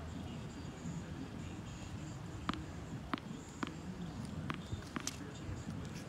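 A tennis ball bouncing on a hard court: five faint, sharp taps about half a second to a second apart in the second half, over low outdoor background noise.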